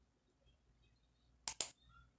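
Two quick computer mouse-button clicks, close together, about a second and a half in, against near silence.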